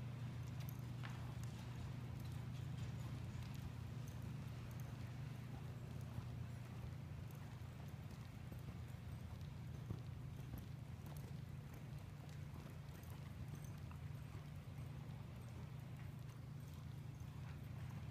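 A horse's hoofbeats, faint, as it trots on the dirt footing of an indoor arena, over a steady low hum.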